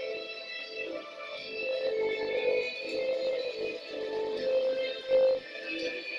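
Slot machine bonus-round music playing from the machine's speakers, with a short louder sound about five seconds in.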